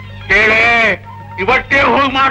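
Film dialogue on an old soundtrack: one drawn-out, wavering vowel about half a second in, then quick speech, over a steady low hum.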